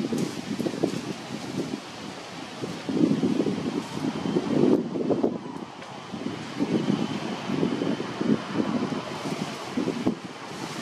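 Wind buffeting the microphone in uneven gusts that swell and fade every second or so.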